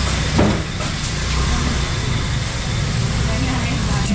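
Busy market background: a steady low rumble under faint chatter of voices, with no one close to the microphone speaking.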